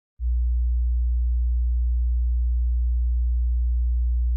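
A single steady, deep, pure hum that starts a moment in and holds at one pitch and level throughout.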